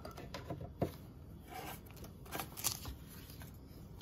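Faint handling sounds from a new sewing machine: a few light clicks and rustling as fingers work at the needle plate and pull away its protective paper.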